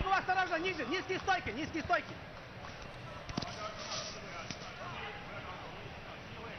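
Wrestling-arena crowd noise: shouted voices in the first two seconds, then a steady crowd hum with a single sharp thump about three seconds in.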